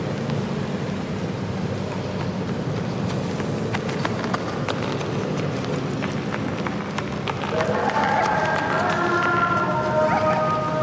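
Outdoor urban ambience: a dense murmur of indistinct crowd voices with scattered clicks. Steady held musical tones come in over it about three-quarters of the way through.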